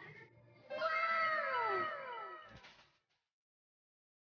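A cat meowing: one long meow, held and then falling in pitch, lasting about a second and a half. The sound cuts off sharply into silence about three seconds in.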